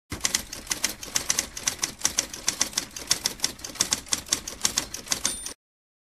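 Manual typewriter keys typing in a quick, uneven run of sharp clacks, several a second. A brief high ring comes just before the typing cuts off suddenly about five and a half seconds in.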